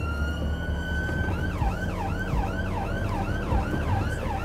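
Ambulance siren heard from inside the cab: a long rising wail that switches, a little over a second in, to a fast yelp of about three down-and-up sweeps a second. The engine and road rumble runs underneath.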